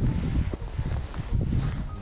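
Wind buffeting the microphone: a loud, uneven low rumble, with a few faint clicks.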